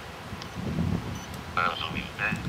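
A man's voice speaking softly and briefly: a low murmur, then a short word or two about one and a half seconds in.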